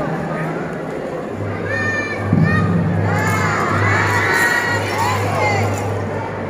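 Young children shouting and cheering together, many high voices overlapping, rising suddenly about two seconds in over the murmur of a crowd.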